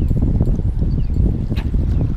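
Wind buffeting the microphone: a loud, uneven low rumble, with one sharp click about one and a half seconds in.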